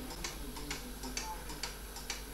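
Faint light ticks, evenly spaced at about two a second, over a quiet room.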